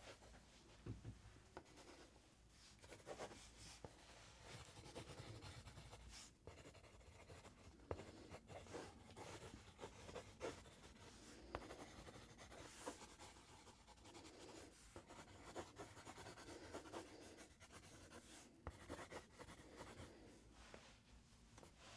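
Faint drawing on a paper sketch pad: irregular runs of short scratchy strokes with brief pauses and the occasional sharp tap of the tool on the paper.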